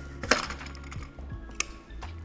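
A small modifier being taken off the front of a Broncolor Siros 800 L monolight, giving a sharp click about a third of a second in and another just past one and a half seconds, over steady background music.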